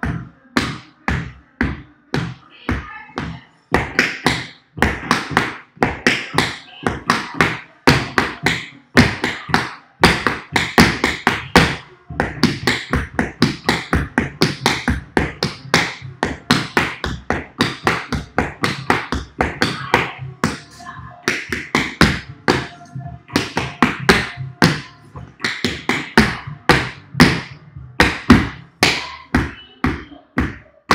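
Tap shoes striking a wooden tap board: a fast, continuous run of sharp metal-tap clicks and heel drops in phrased dance rhythms, several strikes a second.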